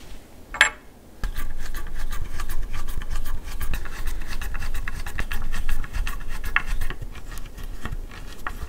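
Hand screwdriver driving a wood screw through a metal keyhole hanger into a black walnut sculpture. It gives a quick run of clicks and squeaks as the screw turns into the wood. A single sharp metal click comes about half a second in, before the screwing starts.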